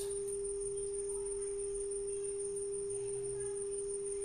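Steady 400 Hz sine tone from a smartphone signal-generator app, played through a multimedia speaker; one pure, unchanging pitch.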